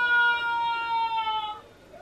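A person's long, high-pitched wailing cry, held with a slight downward slide in pitch, that fades out about one and a half seconds in.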